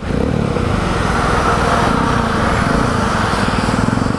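Motorcycle engine running steadily while riding, under a continuous hiss of heavy rain.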